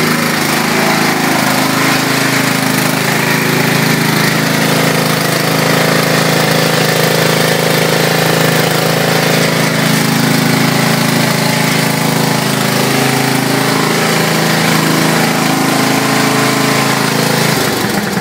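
Briggs & Stratton 12 hp single-cylinder engine on a Craftsman riding lawn tractor idling steadily just after a cold start, the engine still cold.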